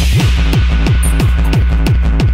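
Hardtek (tekno) electronic dance music: a loud, deep kick drum whose pitch drops on each hit, about three beats a second, with hi-hats ticking between the kicks.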